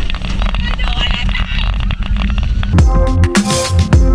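Roller coaster ride audio: wind rushing over the camera and riders' voices over a low rumble, taking the place of the background music for about two and a half seconds. The music comes back in near the end.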